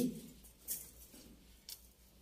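Faint handling noises at a loom: a few light ticks and rustles as hands work a thread among the steel wire heddles of a dobby loom shaft.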